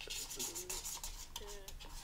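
Felt-tip drawing pen scratching rapidly over painted paper in quick scribbling strokes, a fast run of short scratchy sounds.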